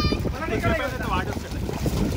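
Pool water splashing and sloshing as swimmers paddle and kick, with wind buffeting the microphone. Short high children's voices come in at the start and again about a second in.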